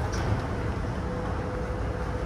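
Steady low rumble of indoor room noise with a faint steady hum, no distinct events.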